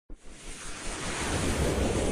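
Whoosh sound effect of an animated logo intro: a swell of rushing noise with a low rumble beneath, building steadily in loudness from the first moment.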